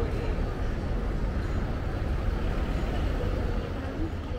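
City street ambience: a steady low rumble, with the murmur of passers-by's voices.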